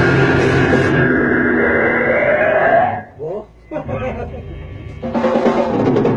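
A heavy metal band of distorted electric guitars, bass and drums plays the song's last notes, which ring out and stop abruptly about three seconds in. Voices talk briefly in the lull, then loud distorted guitar starts again about five seconds in.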